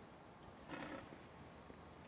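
Near silence: faint room tone, with one brief, faint sound a little under a second in.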